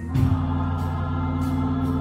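Gospel music from a church choir with organ and drums: long held chords over a steady beat of drum and cymbal strikes.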